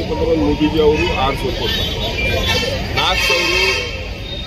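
A man speaking in the open, over a steady low rumble of street traffic.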